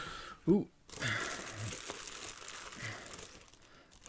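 Clear plastic bags holding plastic model-kit sprues crinkling as they are lifted and handled, an irregular rustle that fades toward the end.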